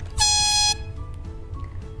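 A single loud horn blast of about half a second at one steady pitch from a handheld megaphone, sounded as a wake-up blast, over background music with a low bass line.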